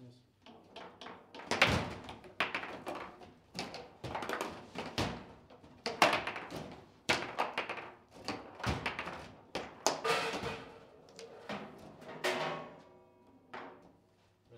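A table football game in play: the ball is struck by the plastic player figures and knocks against the table, with rods and handles banging. The result is a string of sharp clacks and thunks at uneven intervals, the hardest hits about one and a half, six and ten seconds in. Among them is the shot that scores a goal.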